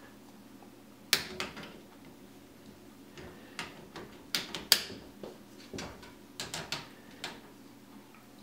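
Irregular sharp clicks and knocks, about a dozen, from a plastic LED work light and its clamp being handled and fitted against a PVC pipe frame.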